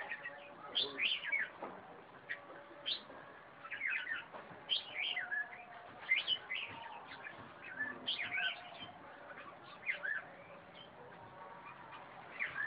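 Red-whiskered bulbul singing: short, chirpy phrases of quick whistled notes that swoop up and down, repeated every second or two.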